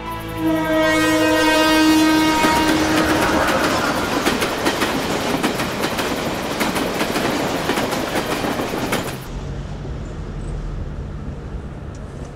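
Train passing close by: its horn sounds at the start over a loud rush, then the wheels clack rapidly over the rail joints. The sound cuts off abruptly about nine seconds in, leaving a low hum.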